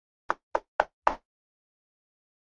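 Four sharp knocks in quick succession, about four a second, the last one ringing on slightly longer.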